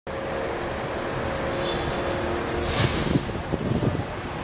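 Road traffic: a steady hum of passing vehicles, with a short hiss about three quarters of the way through.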